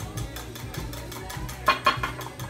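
Wire whisk beating pancake batter in a glass measuring cup, with two sharp clinks of the whisk against the glass close together near the end, over background music.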